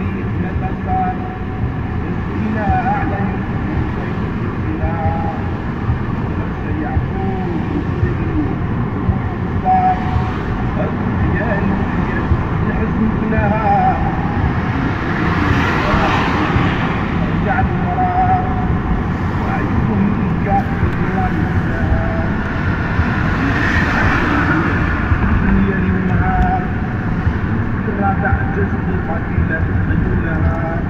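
Steady road and engine noise of a car driving through town, with an Arabic song playing over it: short wavering melodic phrases recur throughout. Two swells of louder, brighter noise come about halfway through and again about three-quarters through.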